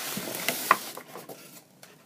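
Cardboard box being slid up off a styrofoam packing block: a hissing scrape of cardboard against foam for about a second, with a couple of sharp clicks, then quieter.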